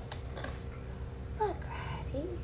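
Light clinks and clicks of plastic toy rings being handled, clustered in the first half-second, over a steady low room hum; a woman says "look" near the end.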